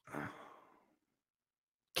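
A man's brief sigh: a short breathy exhale lasting about half a second.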